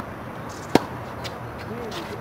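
A tennis racket hits a ball once, a single sharp pop under a second in, followed by a few much fainter ticks.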